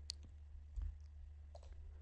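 A few faint, separate clicks from working a computer at the desk, over a low steady hum.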